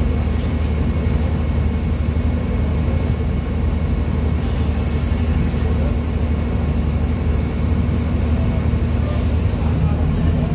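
Mercedes-Benz O-500U city bus's diesel engine running at a steady, unchanging pitch, a low drone that neither rises nor falls.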